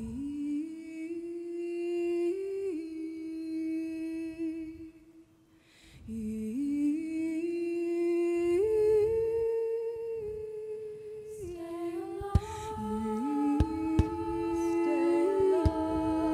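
Female a cappella group humming wordless sustained chords whose pitch climbs step by step, with a brief pause about five seconds in. Near the end a few sharp percussive hits come in under the held chord.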